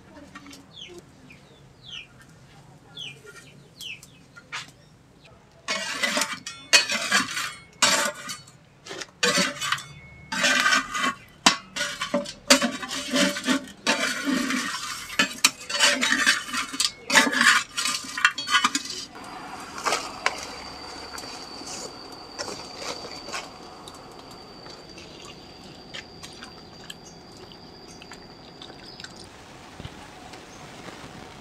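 A metal spatula and a perforated skimmer scrape and clink against a clay wok as small salted fish are dry-roasted without oil, in quick irregular strokes for about a dozen seconds. Before that there are a few faint bird chirps. After it comes a steady hiss with a thin high whistle that stops just before the end.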